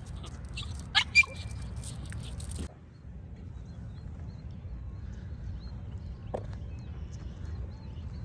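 Outdoor ambience: a steady low rumble with faint, scattered bird chirps. Two short, sharp chirps about a second in are the loudest sounds. The background changes abruptly a little under three seconds in.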